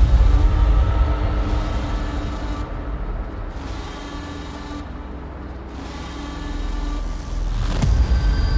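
Tense dramatic underscore: a deep rumbling drone with long held tones that fades down through the middle and swells back up, ending in a sharp hit near the end.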